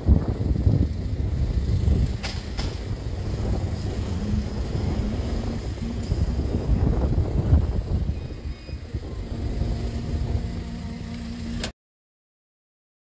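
Car driving along a road, heard from inside: a steady low engine hum and road rumble. The sound cuts off suddenly near the end.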